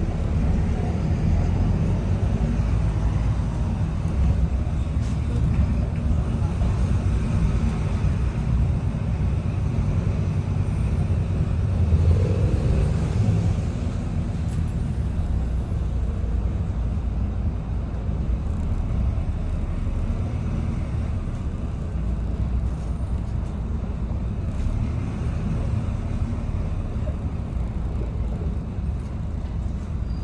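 Volvo B9TL double-decker bus's six-cylinder diesel engine running under way, with road noise, heard from inside the upper deck: a steady low drone that grows louder for a moment about twelve seconds in.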